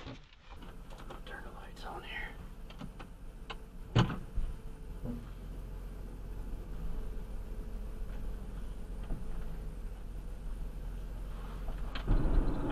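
Quiet vehicle cabin with a steady low rumble, likely the van idling in place, broken by one sharp click about four seconds in and a few fainter ticks.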